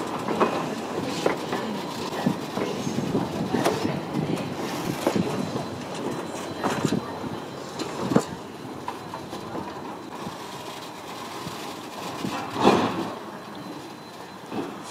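Passenger coaches rolling slowly past, their wheels clacking over rail joints with scattered knocks and clanks, growing quieter as the train moves away. One louder burst near the end.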